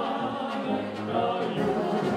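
Czech brass band (dechovka) playing, with tuba, clarinet and trumpets, while several singers sing together into microphones over the band.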